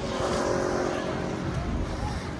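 A motor vehicle's engine passing close by: a hum that swells in the first second, then fades.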